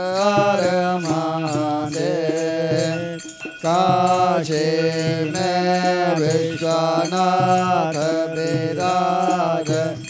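Devotional aarti hymn to Shiva, sung in long held, sliding notes over a steady rhythmic beat, with a brief break a little over three seconds in.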